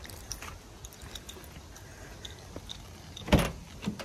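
A car door being unlatched and opened: a sharp clack about three seconds in, followed by a smaller knock, over faint clicks and rustling.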